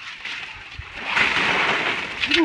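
Two buckets of ice water dumped over two people's heads, a heavy rush of water and ice splashing down onto a wooden deck, building to its loudest about a second in.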